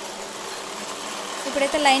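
Domestic sewing machine running steadily as it stitches a seam, with a woman starting to speak near the end.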